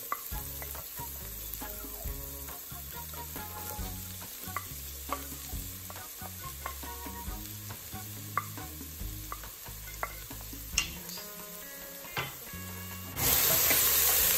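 Chopped scallion and onion sizzling in hot oil in a cooking pot, with a wooden spoon scraping and tapping them off a plate in short, scattered strokes.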